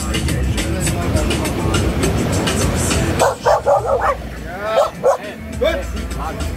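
A dog barking in a quick run of short barks, starting about halfway through, over background music with a steady beat.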